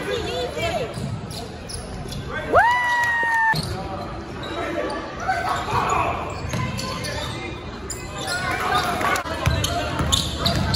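A basketball being dribbled on a hardwood gym floor, with shouts from players and spectators echoing in the hall. About two and a half seconds in comes one loud, high squeal that rises quickly, holds for about a second and cuts off suddenly.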